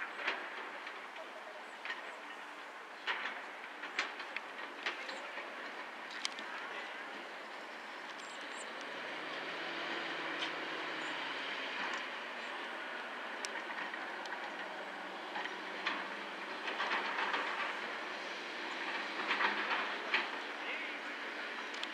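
Steady distant vehicle rumble that swells about halfway through and holds, with a low steady hum in the middle, and scattered short sharp knocks and calls over it.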